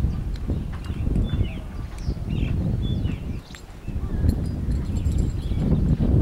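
Wind buffeting the microphone in an uneven low rumble that dips briefly about halfway through, with small birds chirping over it.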